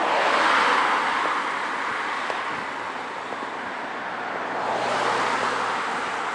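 Road traffic passing close by, mostly tyre noise with some engine hum. One car goes by at the start and another swells past about five seconds in.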